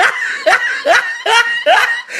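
A person laughing in a rapid series of about five short 'ha' bursts.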